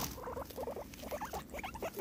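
Guinea pig giving a quick series of short, soft calls.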